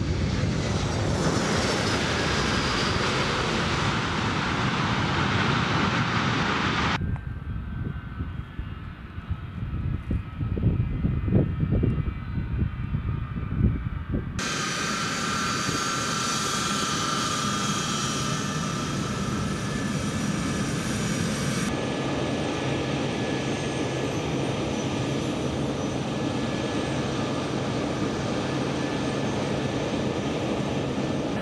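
C-17 Globemaster III's four turbofan engines: a loud, steady roar as it lands and rolls out on a dirt strip. After an abrupt change there are a few seconds of uneven, gusty rumble. Then comes a steady jet whine with high, held tones as the engines run on the ground.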